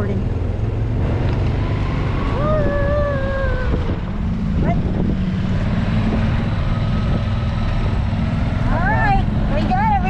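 Golf cart driving along: a steady low rumble of the cart and wind buffeting the microphone. A voice calls out in a long drawn-out tone about two and a half seconds in, and voices come again near the end.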